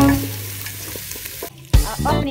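Beef frying in a metal pot: a light sizzle with small scrapes and knocks of a wooden spoon stirring it, fading over the first second and a half. A music note dies away at the start, and after a brief cut-out the music comes back in with a sharp hit near the end.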